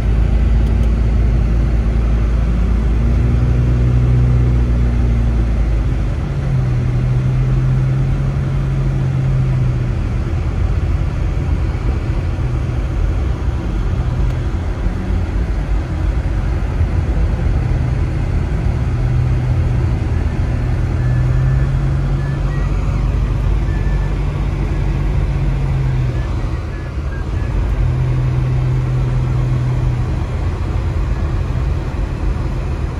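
Car driving on a snow-covered street, heard from inside the cabin: a steady low rumble of engine and tyres, with a low engine drone that swells and fades every few seconds.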